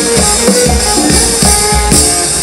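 Live band playing a hip hop backing: steady low thumps from the bass and drum kit under a wash of cymbals, with guitar and percussion.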